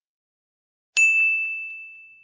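About a second in, a single bright metallic ding is struck. It rings on one high note and fades slowly, with a few faint ticks under the ring. It is the sound effect of a production-logo sting.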